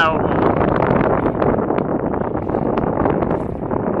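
Wind blowing across the microphone: a steady rushing noise.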